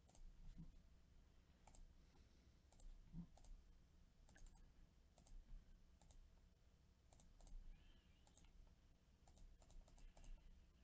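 Near silence with scattered, faint clicks of a computer mouse, spaced irregularly.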